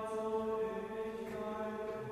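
Liturgical chant of Vespers, sung on a steady held pitch in a reverberant church.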